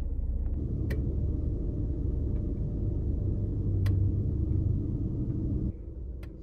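Steady low rumble of a car heard from inside the cabin, with two faint clicks about one and four seconds in. The rumble cuts off suddenly just before the end.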